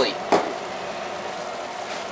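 Ground beef with onions and green peppers frying in a stainless steel stock pot, a steady even sizzle as the meat browns and renders down. A short click comes about a third of a second in.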